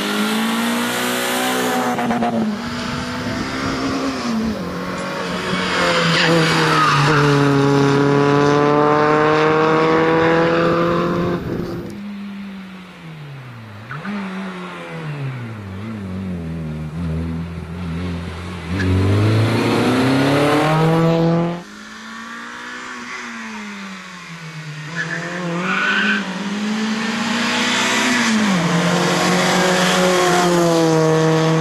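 Renault Clio rally car engine being driven hard through tight chicanes on tarmac, revving up in pitch through the gears and dropping off under braking, with tyre squeal. The sound jumps abruptly twice where separate passes are cut together.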